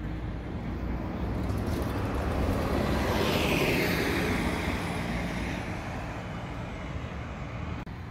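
A motor vehicle passing on a street over a steady background of city traffic. Its sound swells to a peak about halfway through, then fades as its pitch falls while it goes by.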